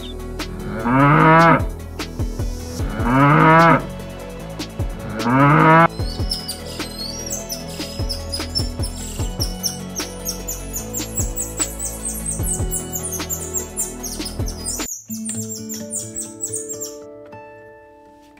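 Three loud animal calls, each under a second and about two seconds apart, over soft background music, followed by a long run of high, quick bird-like chirps; the chirps stop suddenly about three seconds before the end, leaving the music alone.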